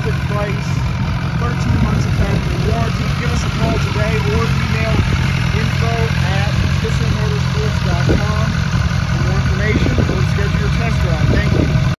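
BMW S1000XR's inline-four engine idling steadily.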